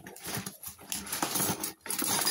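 Cardboard box and toy packaging rustling and scraping as hands work a boxed toy out from among miniature stainless-steel toy pots and cups, with small knocks as the pieces shift.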